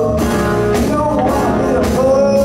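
Live blues-rock band playing: electric guitar over a steady drum beat with cymbal hits about twice a second.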